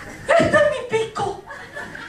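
Theatre audience laughing: a loud burst of laughter about a third of a second in, then shorter chuckles that fade.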